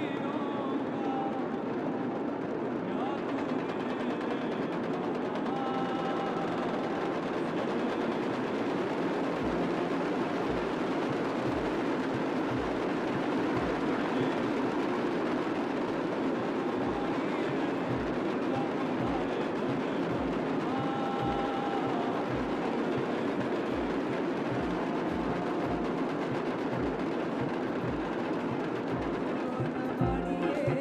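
Many large damaru drums rattled rapidly together by a line of drummers, a dense unbroken clatter. From about ten seconds in, a deep drum beat joins it, roughly once or twice a second.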